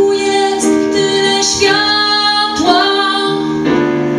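A woman singing a slow song while accompanying herself on piano. She holds long notes, with several phrases beginning in a short slide up in pitch, over sustained piano chords.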